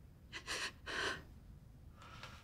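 A woman crying: two sobbing gasps of breath, about half a second apart.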